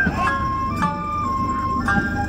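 Japanese bamboo flute (shinobue) playing a lion-dance festival (kagura-bayashi) melody: a few held notes stepping between two pitches, then leaping higher near the end.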